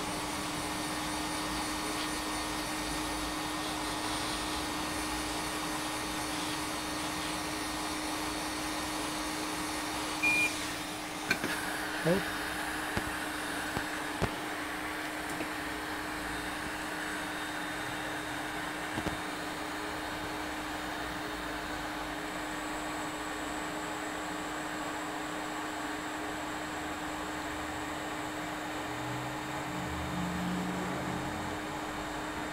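Hot-air rework equipment blowing steadily to heat the circuit board, a hiss with a steady hum under it. About ten seconds in there is a short high beep and a few light clicks, after which the airflow sounds a little brighter.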